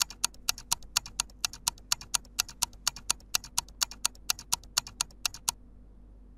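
Quiz countdown-timer sound effect: steady clock-like ticking, about four ticks a second, that marks the answer time running out and stops near the end.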